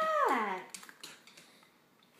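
Siberian husky puppy giving a short howling whine: a held note that slides down in pitch and dies away within the first second.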